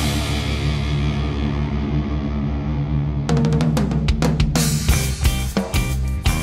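Heavy rock music: a held, ringing low chord for about three seconds, then the drum kit comes in with a run of rapid hits.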